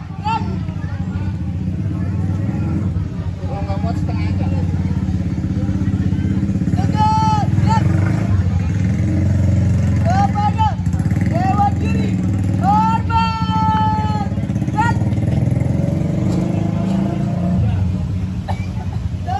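A motor vehicle engine runs with a steady low rumble. Short raised voices call out several times over it, in the second half.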